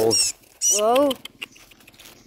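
Two wordless human vocal exclamations: a short one at the start and a longer one about half a second in, its pitch rising and falling.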